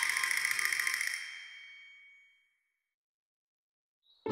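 Cartoon shimmering chime sound effect: a bright, high ringing sparkle that fades away by about two seconds in.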